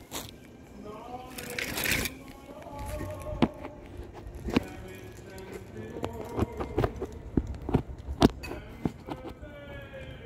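Handling noise from a phone camera being repositioned: scattered clicks and knocks at uneven intervals, with faint music and voices in the background. The leaf blower is not running.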